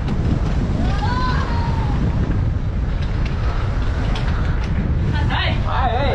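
Loud, steady wind buffeting the camera's microphone as a bicycle rolls fast downhill, with a brief call about a second in and voices near the end.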